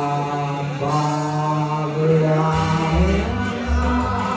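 A man singing long, held notes in a song to an amplified backing track, with low bass notes coming in about two and a half seconds in.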